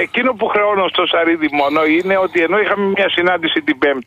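Speech only: a person talking in Greek without pause, as heard in a radio broadcast.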